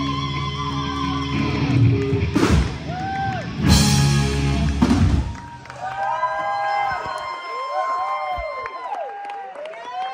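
Live rock band with electric guitars ringing out a held final chord, closing with loud crashing hits about two and a half and four seconds in. The music then stops and the crowd cheers and whoops.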